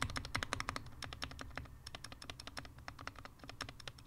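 Anne Pro 2 mechanical keyboard, a stabilized key on its right side pressed over and over, giving fast, muted clicks several times a second. The stabilizers are untuned and there might be a little ticking.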